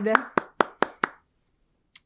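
One person clapping hands five times in quick succession, about four to five claps a second, as praise at the end of a song.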